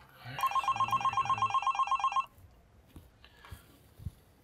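Office telephone ringing with an electronic trill: one burst of rapid warbling tones, about eight pulses a second, lasting just under two seconds, followed by a few faint clicks.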